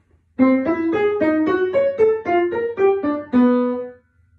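Upright piano playing a twelve-tone row: a quick line of about a dozen single notes, one after another, ending on a longer held note. It is the row that a serial piano sonata is built on.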